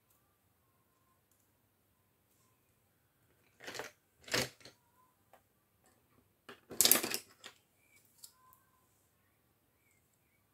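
Wooden colour pencils being handled and set down on a table, clicking and clattering against each other in two short bursts, the louder one about seven seconds in.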